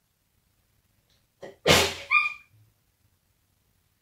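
A single loud sneeze about one and a half seconds in: a faint intake, then a sharp explosive burst, ending in a brief high-pitched squeak.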